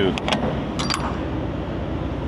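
Steady low rumble of an idling diesel truck engine, with a few sharp clicks in the first second.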